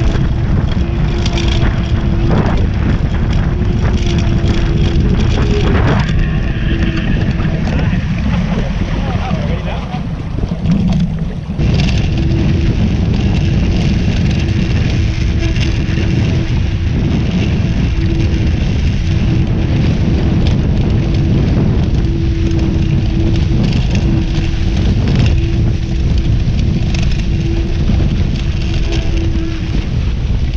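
Wind buffeting the microphone and water rushing and splashing past the hulls of a Hobie 16 catamaran under sail at speed, with a steady hum that comes and goes throughout.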